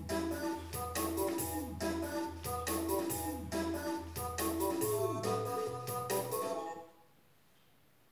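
Keyboard backing track playing: organ-like chords over a steady synth bass line and a regular drum beat. It cuts off suddenly about seven seconds in.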